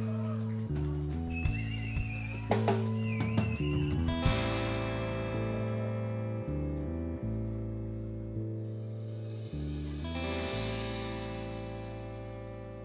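Live band music: electric bass holding long low notes under electric guitar. In the first few seconds the guitar plays bent, gliding notes, then the band holds a sustained chord that slowly fades.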